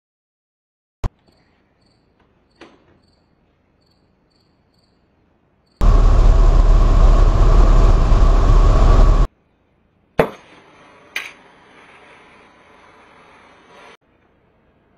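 Cockpit recording of a light aircraft on approach: a loud rush of engine and wind noise lasting about three and a half seconds, starting and cutting off abruptly. It follows a click and faint ticking, and is followed by a quieter steady noise with a thin high tone and a couple of clicks.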